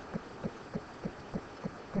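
Calculator keys being pressed one after another while a sum is keyed in: a series of short, soft clicks, about three a second.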